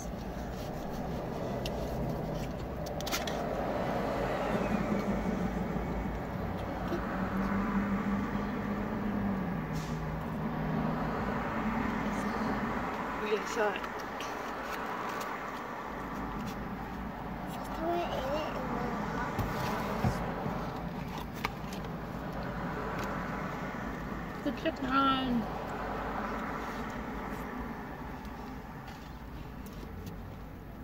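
A steady background rumble with scattered light clicks and rustles from a plastic takeout soup container being handled, and a few brief voice sounds.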